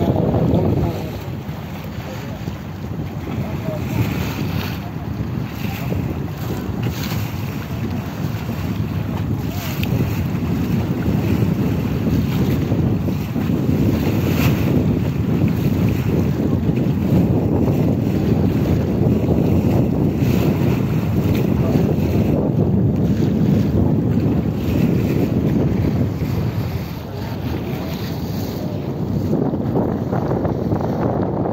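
Wind buffeting the microphone on the open deck of a river ferry under way, a steady low rumble over the rush of water along the hull.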